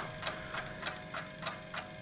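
Faint, regular ticking, about three ticks a second, in a pause without speech.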